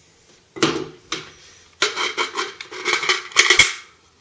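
Rifle magazines handled: a magazine knocks down onto a table, then a magazine is rocked and clicked into a Ruger Mini-14's magazine well. The insertion is a run of hard clacks and rattles over about two seconds, loudest near the end.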